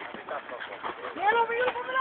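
People's voices talking and calling out, louder in the second second, over faint outdoor background noise.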